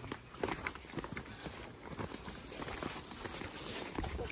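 Footsteps of people walking on a dirt forest trail scattered with dry leaves: irregular, fairly quiet steps and scuffs.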